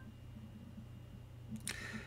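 Quiet room tone with a low steady hum, and a faint click about one and a half seconds in.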